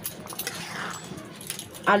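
A metal spatula stirring rice in a wide pan of liquid, with light scrapes and clinks against the metal.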